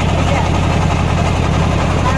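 Inboard engine of a wooden river boat running steadily under way, a loud, even low drone.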